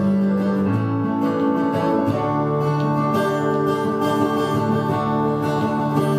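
Instrumental passage of a song: acoustic guitar playing chords over long held notes that change every second or two, with no singing.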